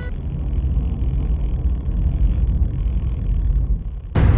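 Off-road dirt bike riding on a dirt trail: a steady low engine rumble mixed with rough riding noise.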